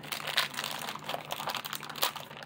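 Plastic packaging crinkling and rustling with many small clicks as a toy accessory part is pulled out of its bag.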